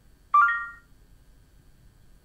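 Samsung Galaxy S6 S Voice assistant chime: one quick three-note electronic tone rising in pitch about a third of a second in, fading within half a second. It signals that the assistant has taken the spoken question and is working on a reply.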